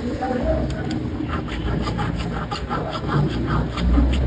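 Jeweller's hand file scraping across the bezel of a gold band in quick repeated strokes, about four a second, flattening the bezel wall so it bends down evenly when the baguette stone is set.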